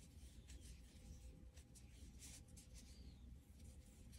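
Near silence with faint scratching of a metal crochet hook and cotton yarn as a treble cluster is worked, over a low room hum.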